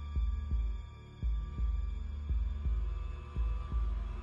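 Heartbeat sound effect over a low, droning suspense score: four double thumps, lub-dub, about one a second.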